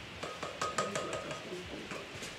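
A quick run of light clicks and clinks, as of small hard objects being handled on a counter, with a faint voice behind them.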